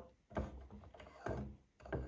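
Faint, short knocks and rubs of a hand taking hold of the wooden screw nuts on a vintage wooden book press, three soft handling sounds in all.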